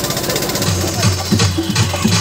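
DJ remix dance music played loud over a sound system. About half a second in, a rapid thudding bass beat comes in under the high percussion.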